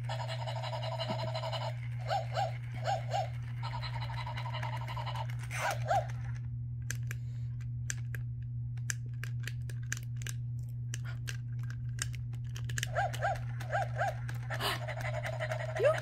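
Battery-powered plush toy puppy playing electronic yips and panting sounds in short runs over a steady low motor hum. In the middle the sounds stop and only rapid mechanical clicking from its moving parts is left. The yips start again about two seconds before the end.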